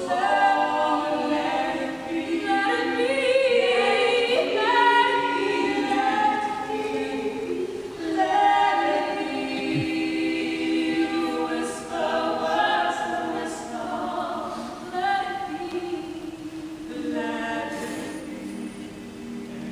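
Mixed choir of men and women singing a cappella in several voice parts at once, in phrases with short breaks between them.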